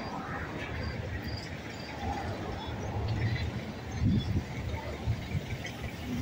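Outdoor street ambience: a low, uneven rumble with faint short chirps scattered through it.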